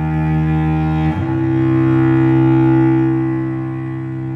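Solo cello playing slow, long bowed notes. It moves to a new note about a second in, which swells and then eases off.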